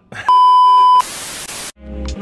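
An added editing sound effect: a loud, steady electronic beep lasting under a second, followed at once by a short burst of static hiss that cuts off, with music starting near the end.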